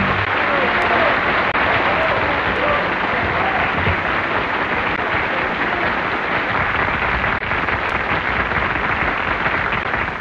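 Studio audience applauding steadily, a dense, even patter of clapping that holds for the whole stretch, with the band's final sustained chord cutting off just at the start.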